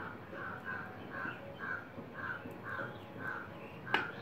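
A bird calling over and over in the background, short calls about twice a second, with one sharp click near the end.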